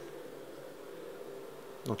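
A steady, faint buzzing hum that holds one pitch, with a man's voice starting right at the end.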